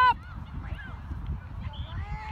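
Low, steady rumble of wind on the microphone with faint voices in the background. At the very start, a loud, long, high-pitched yell from the sideline cuts off.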